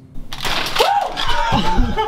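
A sudden loud commotion starting about a quarter second in: startled yelling over rustling and clattering, in a small room.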